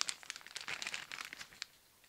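Plastic bag crinkling and rustling in the hands as a packaged item is handled, stopping about a second and a half in.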